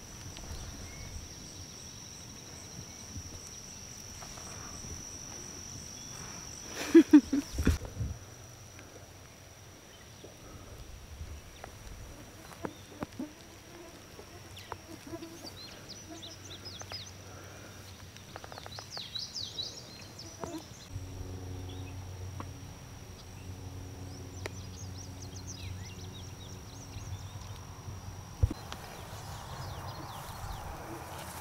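Summer meadow ambience: a steady high-pitched insect drone, with short bird chirps in the middle. A brief loud burst with a couple of thumps comes about seven seconds in, and a low steady hum sets in from about two-thirds of the way through.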